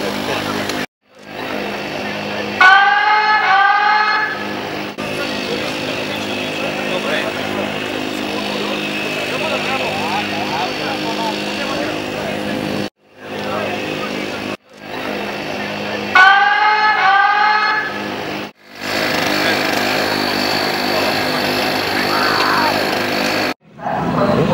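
Motorcycle starting-grid ambience: engines running steadily under people talking, broken by several abrupt edit cuts. Twice there is a short run of quick rising-pitch blips.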